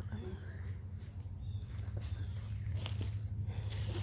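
Scattered light crackles and ticks of dry fallen leaves, as of feet shifting in the leaf litter, over a steady low rumble.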